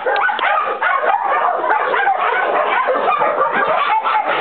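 Many dogs barking at once in kennel runs, a continuous overlapping chorus of barks with no pause.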